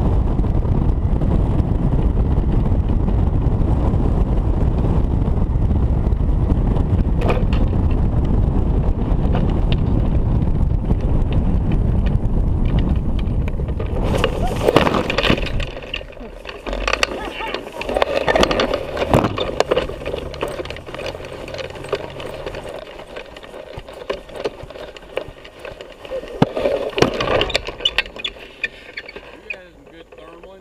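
Steady rush of airflow over the hang glider's camera microphone during the final glide; around halfway through it swells briefly and then falls away as the glider lands and stops. Afterwards it is much quieter, with voices now and then.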